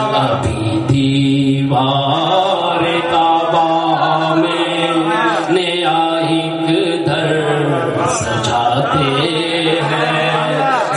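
A man chanting Urdu elegiac verse into a microphone in long melodic phrases, his pitch sliding up and down, over a steady low tone.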